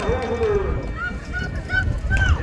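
Spectators cheering at the trackside, with a run of about four short, high honks from about a second in.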